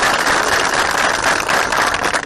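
A group of people applauding: steady, dense clapping.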